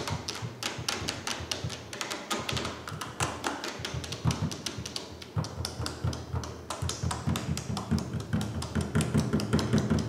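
Fingertips tapping quickly on an empty bottle lying on its side: a dense, uneven run of sharp taps, many each second.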